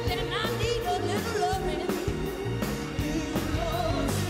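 A live pop song: female voices singing over a band with keyboards and an orchestra, with a steady drum beat.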